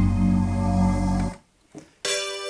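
Roland JD-800 digital synthesizer playing a held preset chord with a deep bass under it. The chord stops suddenly just over a second in, leaving near silence.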